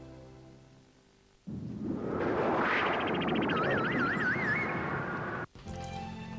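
Television commercial soundtrack: music fades out, then a loud rushing sound effect comes in suddenly, with a warbling whistle-like tone wobbling over it. It cuts off abruptly near the end.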